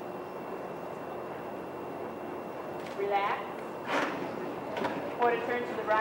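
Steady hiss of the hall and old recording for the first few seconds, then several short, indistinct calls from voices, beginning about three seconds in.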